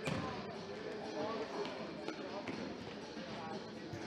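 A futsal ball being kicked and bouncing on a hard sports-hall floor: one sharp kick right at the start, then a few lighter knocks. Players and spectators talk and call out throughout.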